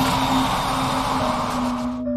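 A loud, steady rush of hissing noise, a horror-film jump-scare sound effect, over a sustained low drone of background music; the noise cuts off at the end.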